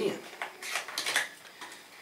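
Small cardboard box of braided fishing line being opened by hand: a quick run of scrapes and light clicks from the card and inner packaging, busiest between about half a second and a second and a quarter in.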